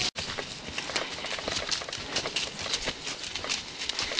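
Donkeys' hooves and footsteps crunching through dry fallen leaves on a forest path: an irregular run of short rustles and crackles.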